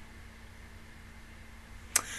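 Faint room tone from a desk microphone: a steady low hum under a soft hiss, with one short sharp click near the end.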